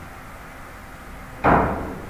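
One sharp click of a carom billiards shot about one and a half seconds in: the cue strikes the cue ball, which is lying close against the red ball, with a brief ringing tail.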